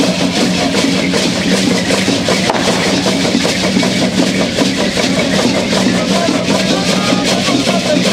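Dense, continuous shaking of many hand-held gourd rattles and leg rattles from a large group of Yoreme Lenten dancers, with a drum beating and voices faintly mixed in.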